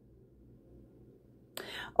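Near silence with a faint low room hum, then a woman's audible intake of breath about a second and a half in, just before speech resumes.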